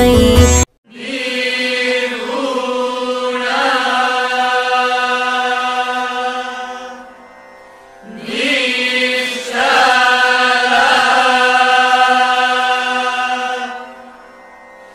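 Devotional music: a song cuts off abruptly just under a second in, followed by two long held notes of about six seconds each, with a short pause between them.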